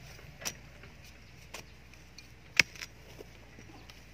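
Long-handled narrow digging spade (thuổng) driven into hard, stony soil around a tree trunk to cut out its root ball: three sharp strikes about a second apart, the third the loudest.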